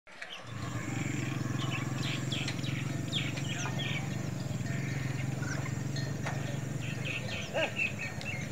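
Birds chirping and calling over a steady low rumble that starts about half a second in and drops out briefly near the end.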